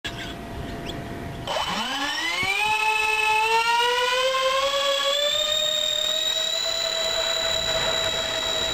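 Four 55 mm electric ducted fans of an RC C-17 Globemaster model spooling up for the takeoff run: a high whine starts about a second and a half in, rises steeply in pitch, keeps climbing more slowly, then holds at a steady high pitch at full throttle.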